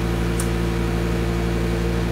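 A steady background hum made of several constant low tones, unchanging throughout, with one faint short click about half a second in.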